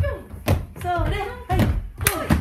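Children's feet thudding on a wooden floor as they land jumps, twice about a second apart, among voices.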